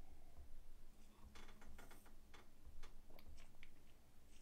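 A person drinking beer from a glass: faint clicking swallows and mouth sounds, several in quick succession in the second half.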